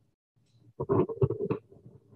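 A man's voice saying a few words and then chuckling, starting just under a second in, heard through a video call.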